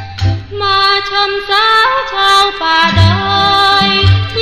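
Thai luk thung song: a female voice sings a melody with sliding ornaments over a band with a steady bass beat. The voice comes in about half a second in.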